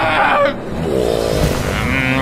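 A man yells loudly and is cut off about half a second in. A sweeping sound follows, rising and then falling in pitch over about a second.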